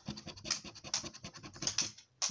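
A large gold-coloured coin scraping the latex coating off a paper lottery scratchcard in rapid, short, uneven strokes.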